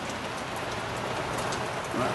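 Steady background hiss, an even rushing noise with faint ticks in it.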